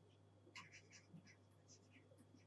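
Near silence: faint scratching of a stylus writing on a tablet, a few short strokes about half a second in and again near the end, over a low steady electrical hum.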